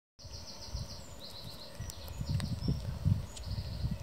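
A small bird calls in a fast run of high chirps, about six a second, during the first half. Under it is irregular low rumbling with a few thumps, and there is a single sharp click about two and a half seconds in.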